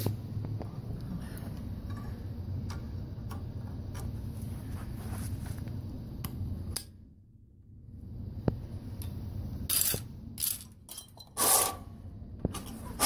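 Handling of a sewer snake's steel cable and metal cutter head: rubbing and scattered metal clicks as the cutter is fitted to the cable end, with a few louder clanks near the end as the cable is lifted.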